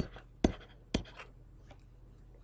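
Stylus on a drawing tablet writing by hand: a few short, sharp ticks and taps, roughly half a second apart.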